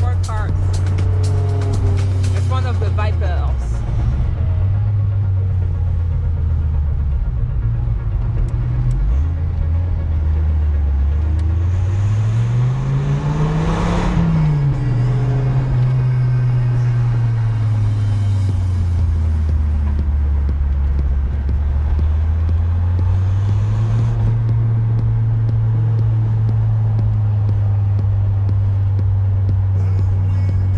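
Dodge Viper RT/10's 8.0-litre V10 pulling through the gears on the move: the engine note dips early, climbs steadily for about four seconds to a peak near the middle, falls away, then settles into a steady cruise.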